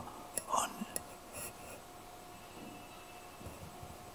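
A pause in a man's speech at a microphone: faint mouth sounds and a short click in the first second and a half, then quiet room tone with a faint steady hum.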